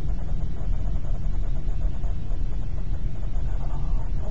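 Steady low road rumble inside a moving car's cabin: tyre and engine noise at driving speed.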